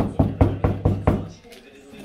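Pendulum wall clock striking on its gong: a fast run of strikes, about four a second, each ringing on, dying away about a second and a half in.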